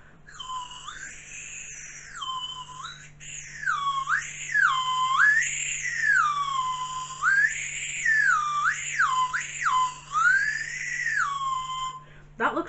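Melody Pop lollipop whistle being blown, its pitch swooping up and down in a string of sliding notes as the stick is pushed in and out.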